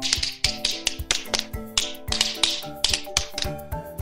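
Quick tap-dance steps, several sharp taps a second like tap shoes on a hard floor, over soft background music with held notes.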